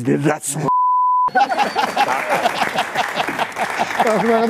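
A censor bleep: one steady, high beep about half a second long, a little under a second in, that blanks out the man's words while it lasts. Loud, excited voices follow it.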